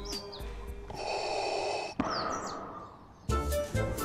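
Darth Vader's mechanical respirator breathing: one long hissing breath about a second in, then a fading exhale. Party music with a steady beat drops out for it and comes back in near the end, with a few short chirps in between.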